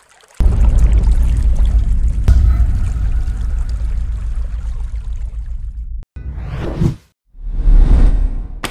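Sound-designed logo sting: a deep boom hits about half a second in and rumbles on, slowly fading for several seconds. It then cuts off abruptly, and two whooshes follow near the end, the first sweeping upward.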